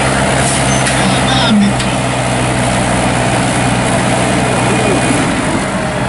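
Farm tractor's diesel engine running steadily under heavy load as it drags a tractor-pulling weight sled slowly along the track.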